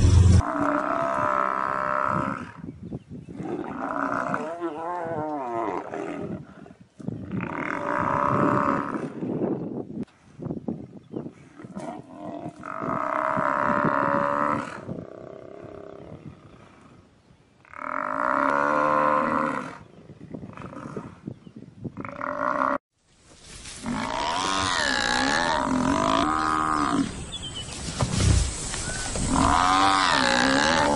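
Lions growling while attacking an African buffalo, mixed with the buffalo's bellowing distress calls. The calls come in about six separate bouts of a second or two, with quieter gaps between, and run nearly unbroken for the last several seconds.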